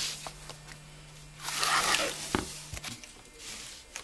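Handling noise: a short rustling scrape and a couple of light clicks as a small cardboard-and-wood model tram is moved about on a table, over a low steady hum that stops about three seconds in.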